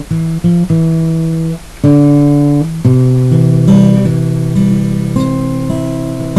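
Solo guitar playing slowly under the closing credits: plucked notes and chords that ring on, a new one every half second to a second.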